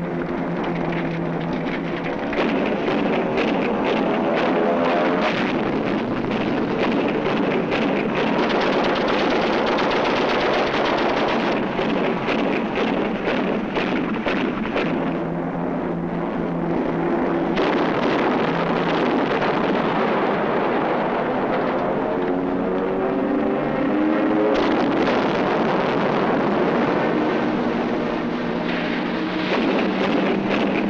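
Film battle sound: a propeller aircraft engine running loud, its pitch sweeping up and down as the plane passes, with a dense rattle of gunfire and explosions through the middle.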